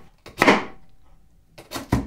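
Kitchen knife cutting a carrot on a wooden cutting board: one sharp knock about half a second in, then two quicker knocks near the end.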